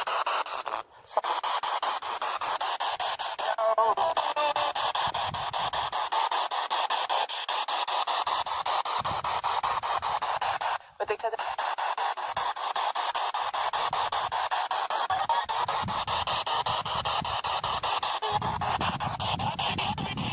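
Spirit box sweeping through radio stations: a continuous, rapidly chopped hiss of static with snatches of broadcast voices and music. It cuts out briefly about a second in and again near eleven seconds, with wind rumbling on the microphone in places.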